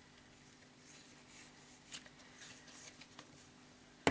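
Near silence: room tone with a few faint clicks and rustles of small plastic bottles being handled on a table.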